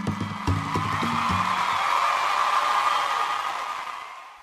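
The close of a radio programme's intro jingle: music with low held notes and a beat, giving way to a noisy swell that fades out near the end.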